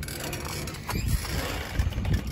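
Metal playground seesaw being climbed onto and rocked, with irregular low rumbles and knocks and rustling handling noise close to the microphone.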